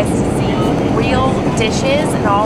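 Steady in-flight cabin noise of a Boeing 787 airliner, an even low rumble and rush, with a voice talking over it.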